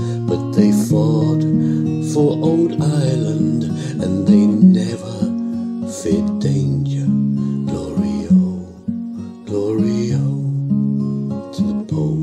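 Acoustic guitar playing an instrumental passage of an Irish ballad: strummed chords under a changing melody, with no singing.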